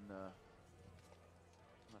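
A man's short hesitation sound, "uh", right at the start, then near silence with only a steady low hum and faint background haze.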